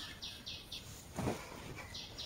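Faint, evenly paced high chirping, about four chirps a second, with a short rustle of cloth about a second in as a cotton t-shirt is handled.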